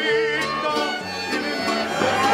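Mariachi music: violins playing a melody over a bass line whose notes change about twice a second.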